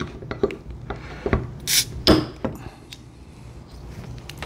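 Crown cap being pried off a glass beer bottle: a few metallic clicks, then a short, nice little hiss of escaping carbonation as the seal breaks, followed by a knock.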